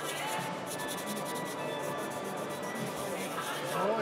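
Flexible sanding sponge rubbed back and forth over a wetted plastic model wing in repeated short strokes: wet sanding away raised panel lines. Background music runs underneath.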